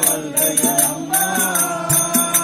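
Live folk-drama accompaniment: metallic jingling in a steady beat with a few strokes on a barrel drum, and a sustained note coming in about a second in.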